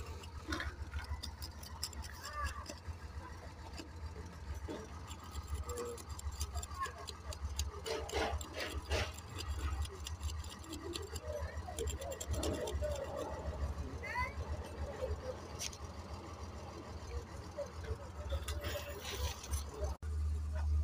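Faint, indistinct voices of people talking, over a steady low rumble and scattered light clicks.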